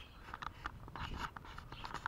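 Faint handling noise from a handheld camera: scattered small clicks and scrapes over a low rumble.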